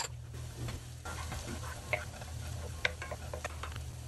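Chopped garlic and sliced ginger sizzling in hot olive oil in a pan, with a wooden spoon giving scattered clicks and scrapes against the pan as it is stirred.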